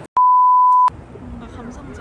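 A single loud, steady, high-pitched bleep tone dubbed over the audio for about three-quarters of a second, with all other sound cut out beneath it: a censor bleep. It is followed by quieter outdoor ambience.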